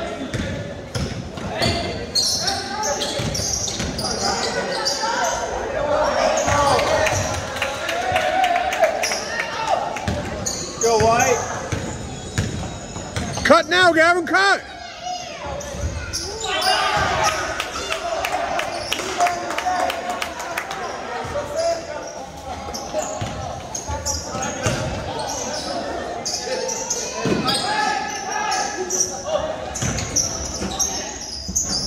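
A basketball being dribbled on a hardwood gym floor, with sneakers squeaking and background voices echoing in a large gym. A burst of loud squeals comes about 14 seconds in.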